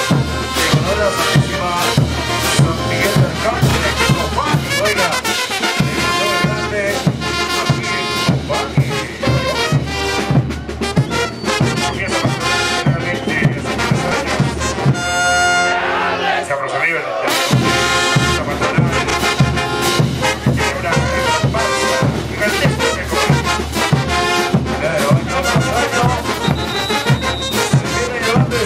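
Bolivian brass band playing dance music, trumpets and trombones over a steady bass-drum beat. The drums drop out for about two seconds just past halfway, then the beat comes back in.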